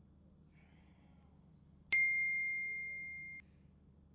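Smartphone text-message notification: a single bright ding about two seconds in that rings on, fading, for about a second and a half before cutting off abruptly.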